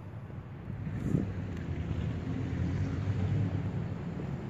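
A vehicle engine rumbling nearby, a low steady hum that grows a little louder after about a second, with a brief thump about a second in.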